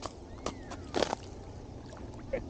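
A boot scraping and crunching in snow and slush at the edge of an ice-fishing hole, twice, about half a second and a second in.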